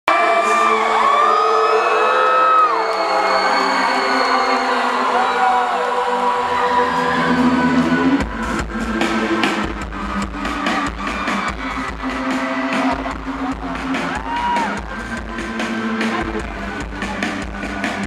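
Live band music in a large outdoor venue heard from within the audience: held chords with the crowd whooping and screaming over them, then about eight seconds in a steady beat with deep bass and drum hits comes in.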